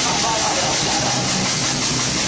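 Rock band playing loud and heavily distorted, heard as a dense, steady wash of noise with a voice in it.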